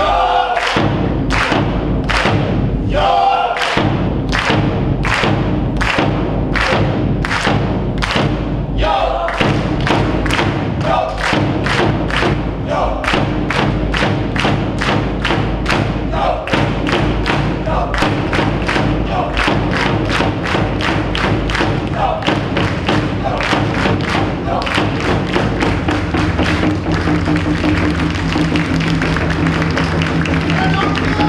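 Cheer-squad brass band playing over a steady, heavy drum beat, about two beats a second at first and quickening to about three a second from around ten seconds in.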